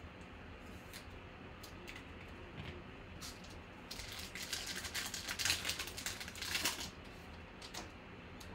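Foil wrapper of a Panini Prizm football card pack crinkling and tearing as it is ripped open by hand, a run of crackly rustles lasting about three seconds in the second half, after a few faint clicks.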